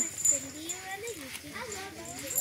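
Several people's voices chattering and calling out, children's voices among them.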